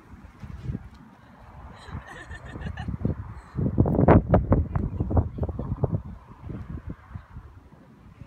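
Wind buffeting the microphone in uneven gusts, loudest for a couple of seconds around the middle, in a wind strong enough to fly a power kite.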